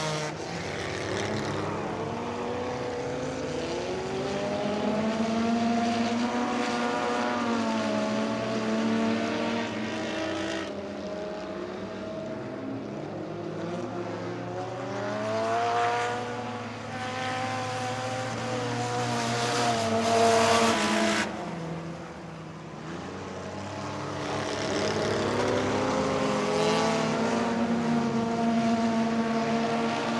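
Several compact stock cars racing on a dirt oval, their engines climbing in pitch down the straights and falling off into the turns, swelling and fading as the pack laps past. They are loudest about twenty seconds in.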